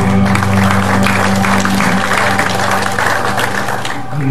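A congregation claps while the worship band's final held chord on guitars rings on and fades.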